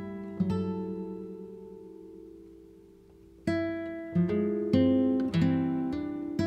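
Background music on a plucked acoustic guitar: a chord rings out and slowly fades over about three seconds, then picked notes start up again in a gentle pattern.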